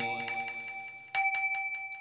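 A metal bell struck twice, about a second apart, the second strike louder. Each strike rings with a clear steady tone that slowly fades.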